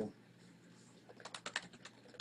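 Typing on a computer keyboard: after a short quiet spell, a quick run of faint key clicks starts about a second in.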